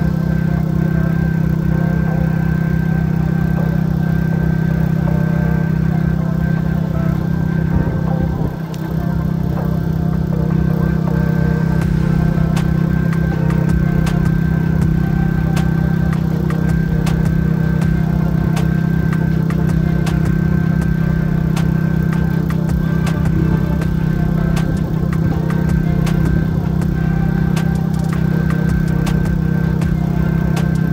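Gas snowblower engine running steadily under load as it clears snow, with a brief dip about eight and a half seconds in.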